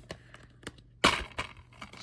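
White plastic DVD keep case being pried open: a few small clicks, then a sharp snap as the clasp lets go about a second in, followed by lighter plastic clicks.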